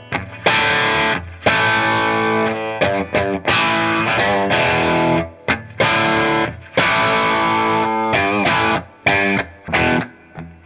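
Distorted electric guitar played through a vintage Marshall amp into a Marshall 1972 2x12 speaker cabinet: chords and single-note riffs in short phrases with brief breaks between them. The cab gives much of a 4x12's character but a much brighter tone.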